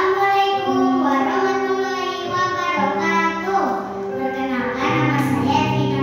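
A girl's voice reciting a poem in a drawn-out, sing-song way into a microphone, with long held notes, over background music with sustained low notes.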